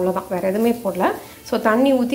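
A woman speaking Tamil, with a short pause a little past one second in.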